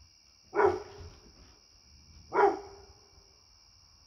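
A Labrador retriever barking twice, single barks nearly two seconds apart, over a faint steady high drone.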